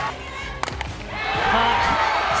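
A single sharp crack of a softball bat hitting the ball about half a second in, over background music. Crowd noise swells after it.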